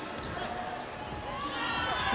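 Basketball game sound in an arena: a ball dribbling on the hardwood court under a low crowd murmur, the crowd noise rising toward the end.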